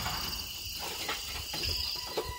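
Crickets chirring in a steady, high-pitched chorus.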